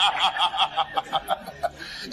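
Laughter: a run of short chuckling laughs, about seven a second, growing fainter and dying away after about a second and a half.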